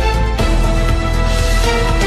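News-channel theme music: a loud music bed of held chords over deep bass, with a sharp hit about half a second in.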